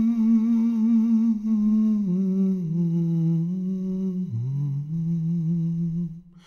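A man humming a slow wordless melody unaccompanied, holding long notes with a slight waver. The pitch steps down about two seconds in and again a little after four seconds.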